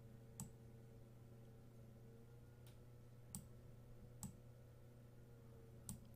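Near silence over a faint steady hum, with about five faint computer mouse clicks spread unevenly, as on-screen sliders are adjusted.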